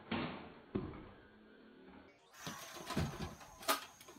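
A few short, sharp knocks and thumps, two in the first second and a quick cluster of them near the end.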